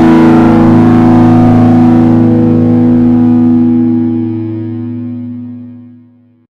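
Raw black metal track ending on a sustained distorted guitar chord that rings on, then fades away over the last few seconds.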